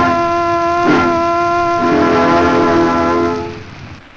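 Solo trombone with a brass military band on a 1901 acoustic recording, playing the last notes of the piece. Held notes lead into a final full chord that dies away about three and a half seconds in, leaving only the record's hiss.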